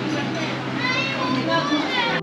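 Chatter of several voices, some of them high children's voices, over a steady low hum.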